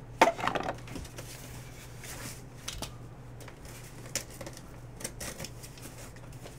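A short laugh, then scattered light knocks, taps and rustles as a cardboard case of card boxes is picked up and handled, over a low steady hum.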